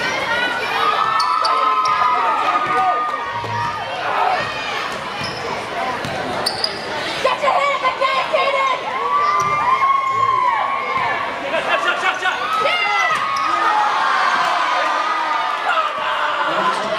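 Basketball play on a hardwood gym court: sneakers squeaking in short, repeated squeals and a basketball bouncing, over steady crowd chatter.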